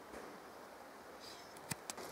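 Quiet forest background: a faint steady hiss, with a couple of soft clicks near the end.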